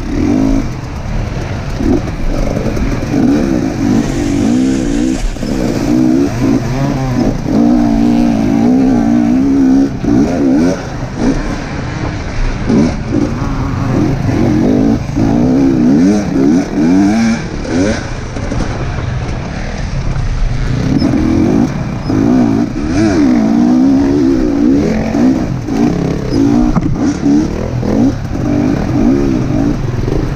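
Enduro dirt bike engine, heard from on board, revving up and down continually as the throttle is worked over a rough, muddy dirt track.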